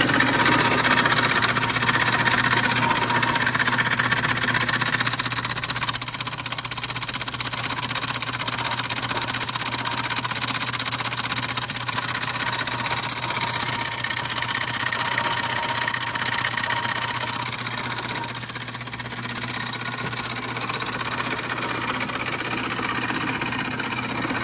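Electric motor driving a 1959 Meadows Mill 8-inch stone gristmill, running steadily with a constant hum while the millstones grind shelled corn fed in from the shoe. The grinding noise is continuous and eases slightly in the last few seconds.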